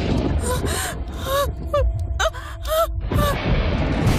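A man's voice giving a run of short, strained gasps and grunts over a low rumble in the film's soundtrack.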